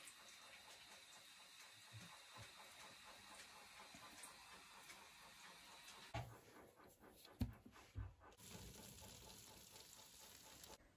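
Near silence: quiet room tone, with a few faint low thumps about six, seven and a half and eight seconds in.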